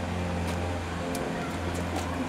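A motor running steadily with a low hum, and two faint sharp clicks about half a second and a second in.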